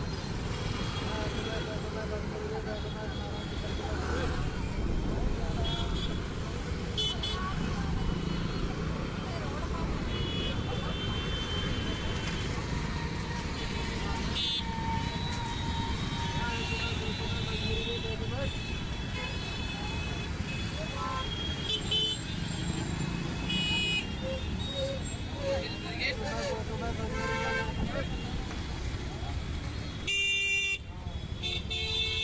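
Busy street traffic: motor scooters, auto-rickshaws and cars running past, with short horn toots now and then and people's voices mixed in.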